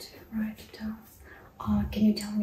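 Soft, whispery female speech: a couple of brief murmurs, then a woman starting to talk, louder near the end.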